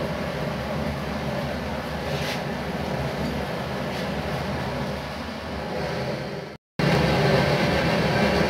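A steady low rumble, with a hard cut to silence about six and a half seconds in before the rumble returns.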